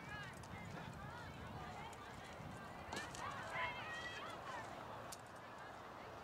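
Distant shouts and calls of players and spectators carrying across open soccer fields, in short rising-and-falling cries that come thicker about halfway through. A couple of sharp knocks stand out, one about halfway and one near the end.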